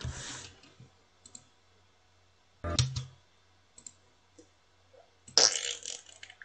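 A few faint computer mouse clicks between three short, loud noisy bursts: one at the start, one near the middle and the loudest near the end.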